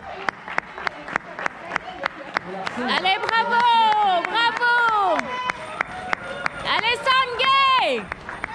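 Hands clapping steadily, about four claps a second, for runners passing by. Over the clapping come loud, drawn-out shouted cheers sliding up and down in pitch, about three seconds in and again near the end.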